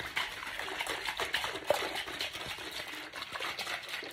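Steady running water in a small room, a continuous hiss-like trickle with a few faint ticks.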